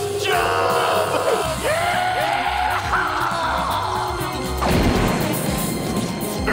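Cartoon background music with sliding notes, broken by a loud crash about five seconds in.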